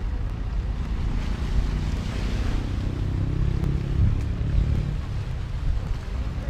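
Wind buffeting the microphone at the seafront, a steady low rumbling noise, with a faint hum in the middle of it.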